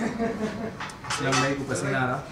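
Plates and cutlery clinking on a table, a few sharp clinks, over voices talking.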